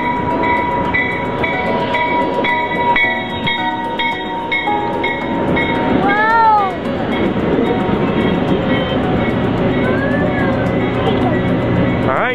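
Passenger train pulling into the station and running past the platform. A tone repeats a few times a second for about the first five seconds.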